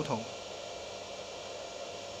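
Steady, even background hiss with faint steady hum tones and no distinct events, after the last word fades in the first moment.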